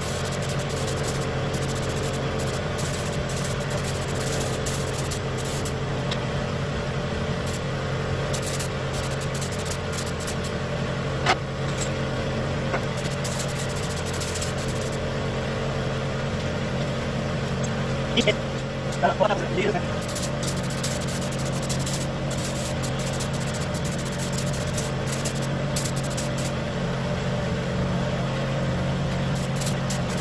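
Air compressor running steadily while a gravity-feed spray gun sprays paint in short hissing passes as the trigger is pulled and released. A sharp click about a third of the way in and a few brief squeaks a little past the middle stand out above the steady hum.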